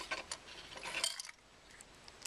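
Light clicks and rattling of small plastic parts as a Utilitech mechanical light timer's gearbox and motor are pressed back together by hand, with a few more clicks near the end.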